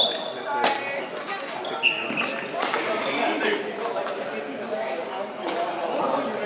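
Badminton play on a wooden sports-hall court: sharp racket hits on the shuttlecock and thuds of footwork, with brief shoe squeaks on the floor, the loudest hit just under two seconds in. Players' voices carry in the background, echoing in the large hall.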